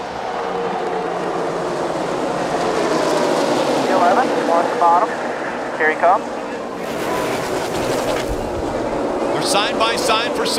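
A tight pack of NASCAR Sprint Cup stock cars racing flat out in the draft. Their many V8 engines blend into one dense, steady drone, with brief snatches of voice in the middle.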